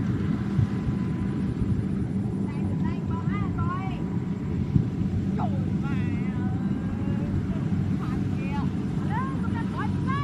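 Steady low drone of a Kubota rice combine harvester's engine working in the field, with scattered high chirping calls over it.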